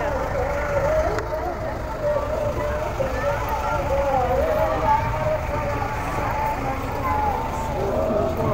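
A voice singing or chanting a long, slowly wavering line over a low, steady rumble.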